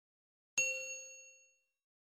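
Bell-like 'ding' sound effect of a subscribe-button notification-bell animation, struck once about half a second in and ringing out over about a second.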